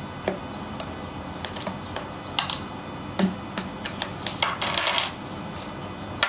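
Draughts pieces clicking and tapping on a folding board as a multi-capture combination is played out, captured pieces picked up and set down beside the board. A short, denser clatter of pieces comes just before the end.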